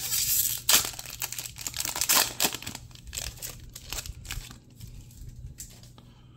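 Wrapper of a Bowman baseball trading-card pack being torn open and crinkled by hand. It is loudest in the first couple of seconds, then fainter rustles die away near the end.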